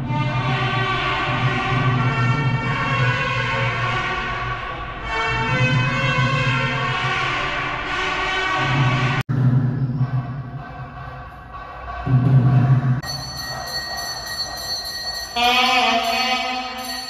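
Music of long held tones, broken by a sudden cut about nine seconds in, after which it changes to a brighter passage.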